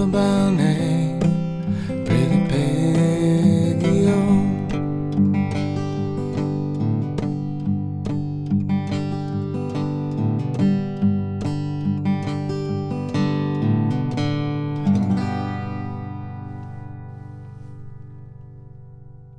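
Steel-string acoustic guitar fingerpicked through a closing instrumental passage. A held sung note carries over it for the first few seconds. About three seconds before the end a final chord is struck and left to ring out and fade.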